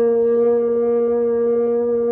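French horn sounding one steady held note, the F fingered with the first valve, even in pitch and level.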